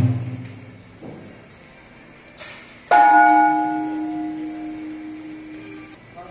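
A large temple bell is struck once about three seconds in and rings on with a long, slowly fading hum. In the first second the ringing of an earlier strike dies away.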